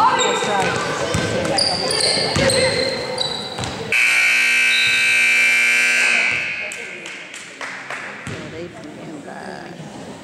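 Gym scoreboard horn sounding once, a steady, loud tone that starts suddenly about four seconds in and lasts a little over two seconds, as the game clock runs out at the end of the second period. Before it, a basketball bounces on the court floor among short shoe squeaks and voices.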